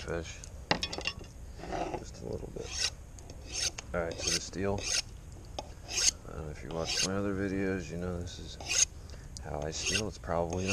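Knife blade drawn along a steel honing rod in repeated strokes, a sharp metal-on-metal scrape about once a second, setting the edge's burr before filleting. A low wavering hum comes and goes between some strokes.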